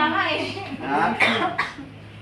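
Indistinct talk from several people in a room, with a short cough about a second and a half in.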